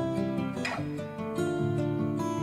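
Music: an acoustic guitar playing chords in an instrumental passage with no singing, with one stronger strum a little past half a second in.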